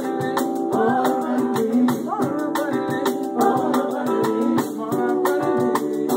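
Live band music: acoustic guitar chords and a drum kit under a woman singing, with a steady high percussion beat of about four strokes a second.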